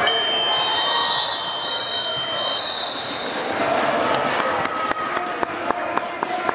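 A single long, steady, high-pitched blast lasting about two and a half seconds, over chatter in an echoing gym. Basketballs bouncing on the hardwood court from about four and a half seconds on.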